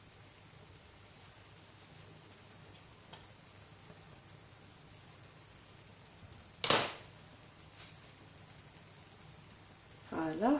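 Kitchen handling sounds while tomato slices are laid on vegetables in a clay tagine: low room tone with a faint hum, a few light clicks, and one sharp knock about seven seconds in.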